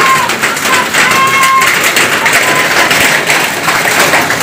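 Heavy rain mixed with hail falling on wet concrete and a tiled roof: a steady hiss of countless small impacts.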